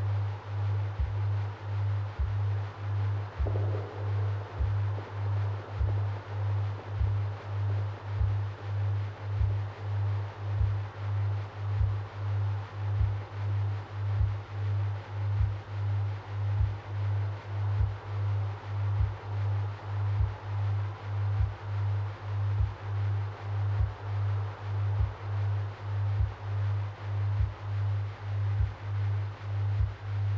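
Ambient meditation music: a low binaural-beat drone that swells and fades about twice a second, soft low percussion ticking about once a second, and a faint airy synth wash behind it.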